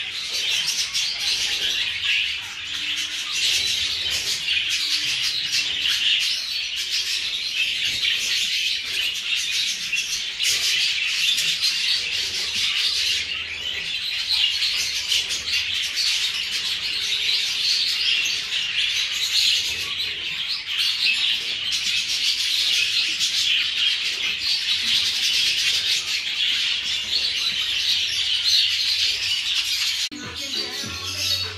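Dense, continuous chirping and chattering of many small caged parrots together, a steady aviary chorus with no pauses.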